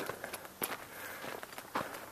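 Footsteps on a dirt trail: a couple of distinct steps about a second apart over faint outdoor background.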